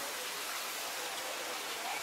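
Water from a turntable ladder's monitor jet raining down onto charred roof timbers: a steady, even hiss.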